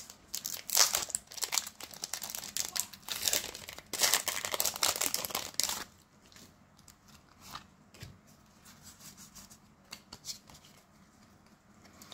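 A foil Pokémon booster pack being torn open and crinkled, loud and crackly for about the first six seconds. Then soft, faint rustles and clicks as the cards are taken out and handled.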